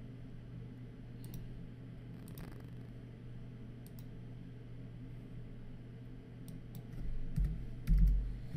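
Scattered single computer mouse clicks over a steady low hum, as dialog boxes are clicked through. A few low thumps come near the end.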